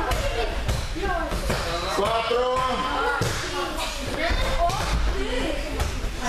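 Several dull thuds of judo students being thrown and landing on foam mats, among many overlapping children's voices echoing in a large hall.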